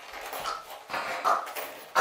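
A man's strained, choked whimpers as he is throttled on the floor, two short ones about half a second and just over a second in.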